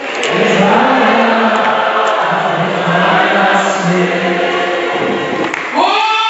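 Congregation singing together, many voices in a dense sung chorus carrying a slow stepping melody.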